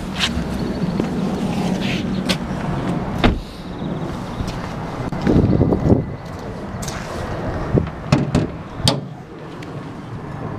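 A Vauxhall Astra's bonnet being opened: the release lever pulled from inside, then the bonnet catch freed and the lid lifted. This is heard as a string of sharp clicks and knocks, several close together near the end, over a steady low rumble.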